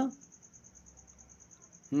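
A faint high-pitched trill, evenly pulsed at about ten pulses a second, under quiet room tone, with the tail of a spoken word at the start and a voice resuming at the end.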